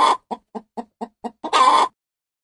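A hen cackling: quick short clucks, about six a second, broken by a longer, louder call at the start and another about one and a half seconds in.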